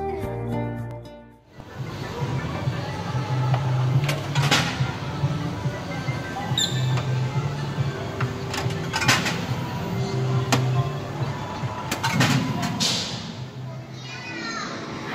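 Soft guitar background music fading out in the first second and a half, then the din of a children's arcade: electronic machine music with a repeating low pulse from a bowling-themed ball-rolling arcade game, broken by sharp clacks every few seconds as small plastic balls are rolled.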